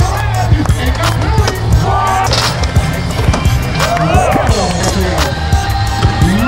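Skateboards rolling and clacking on ramps under a music track with a steady bass line, with voices calling out over it.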